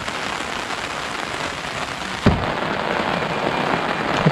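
Steady rain hiss, falling on an umbrella overhead. A single thump comes a little past halfway as the Tata Tiago's driver door is unlatched and opened.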